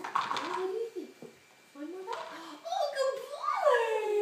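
A baby's wordless vocal sounds: short high-pitched coos and fussing noises in several bursts, building to a louder call with a rising-then-falling pitch near the end.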